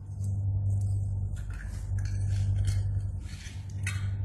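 A steady low electrical hum, with scattered light scrapes and crackles of thin, brittle baked crunch sheets being handled and shaped around metal cone molds.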